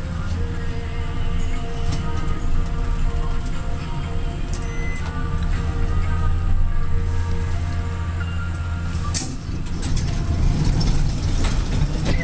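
Westinghouse Selectomatic traction elevator car travelling between floors with a steady low hum. A sharp click about nine seconds in as it stops, then the doors begin to open near the end.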